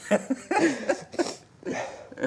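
People laughing in several short bursts.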